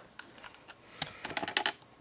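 Hard plastic parts of a transforming action figure clicking and tapping as they are handled and a small antenna piece is fitted on: several light clicks, most bunched in the second half.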